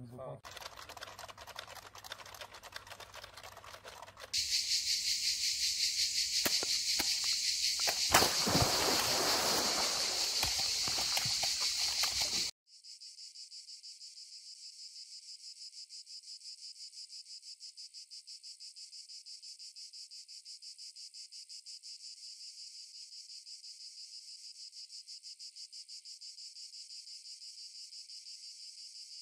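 Cicadas chirring in a steady, fast-pulsing high buzz, loud from about four seconds in; after about twelve seconds only the thinner, quieter high buzz is left.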